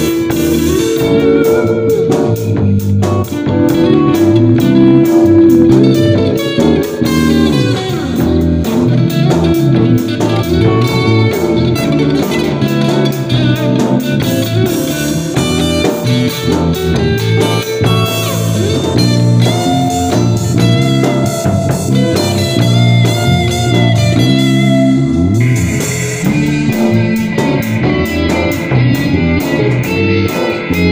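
Stratocaster-style electric guitar playing a melodic lead line over a backing track with bass and drums.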